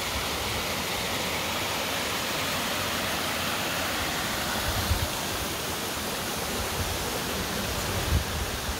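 Steady rush of a tall, thin waterfall of about a hundred feet and the rocky creek below it, with little water flowing.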